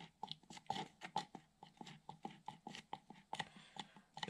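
Faint, irregular scraping and clicking of a stir stick against the wall of a plastic cup as two-part epoxy resin is stirred slowly, several small clicks a second.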